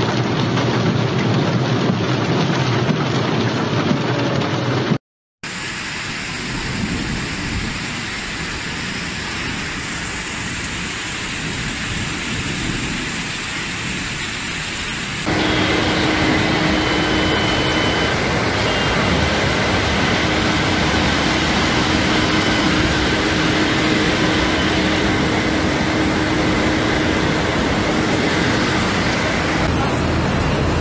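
Steady noise of heavy rain and rushing floodwater, cut by a brief dropout to silence about five seconds in. It grows louder from about halfway, where a faint steady tone sits under the noise.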